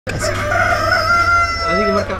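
Rooster crowing: one long, drawn-out call held for nearly two seconds, dipping slightly in pitch near the end.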